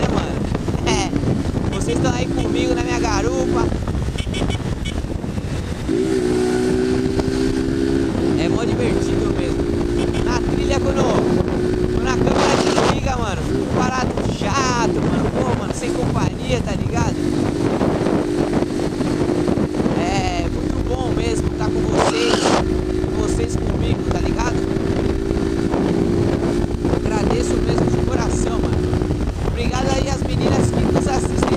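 Honda motorcycle engine running at a steady cruise, its low hum holding an even pitch for long stretches, under heavy wind and road noise on the rider's microphone.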